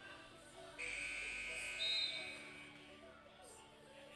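Shot clock buzzer sounding, a steady electronic buzz that starts abruptly about a second in and lasts about two seconds: the 12-second shot clock has run out. A short high whistle sounds over it near the middle.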